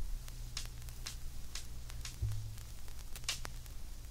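A steady low hum with scattered crackles and clicks, like the run-in noise at the start of a music track.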